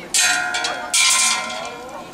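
Two sharp metallic clangs about a second apart, each ringing on and fading: arrows striking the metal pots of a tuho (Korean arrow-throwing) game.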